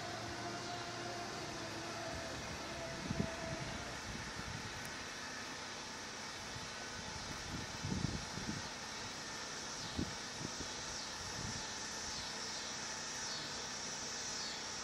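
Steady outdoor background noise, a hiss and low hum, broken by a few soft low thumps about three, eight and ten seconds in.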